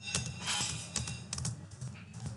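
Computer keyboard space bar pressed repeatedly, a quick series of key clicks, each press paging a text file forward in the Unix 'more' pager.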